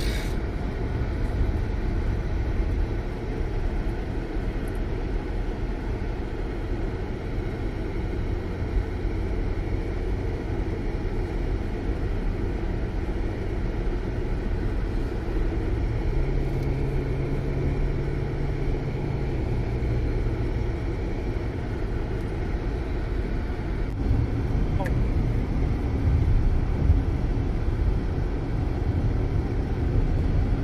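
Road noise inside a car's cabin at highway speed: a steady low rumble from the tyres and engine. A low steady hum joins for a few seconds just past the middle, and the rumble grows a little louder near the end.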